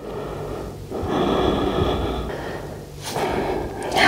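A woman breathing audibly as she rests after exertion: one long breath about a second in, and a shorter one near the end.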